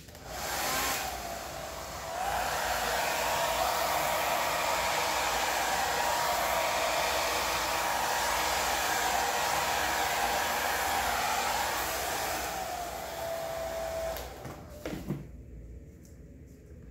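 Hair dryer blowing air across wet acrylic paint on a canvas: it comes on at once, dips and picks up again in the first couple of seconds, then runs steadily with a faint motor whine. It shuts off near the end, followed by a light knock.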